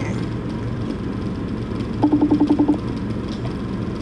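Phone's electronic alert: a rapid run of about nine short beeps lasting under a second, about two seconds in, over a steady low hum. The video call has just been hung up.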